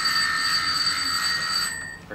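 An electric doorbell rings in one long, unbroken ring that stops shortly before the end.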